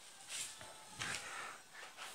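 Faint footsteps, three soft scuffing steps of shoes on a concrete floor at a walking pace.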